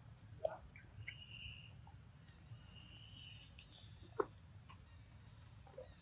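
Faint insect drone, steady and high, with short repeated chirps over it and a couple of faint high whistles. Two short clicks stand out, one near the start and one about four seconds in.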